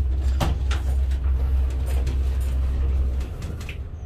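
Passenger lift car moving with a steady low rumble that stops a little over three seconds in as the lift arrives, with a single knock about half a second in.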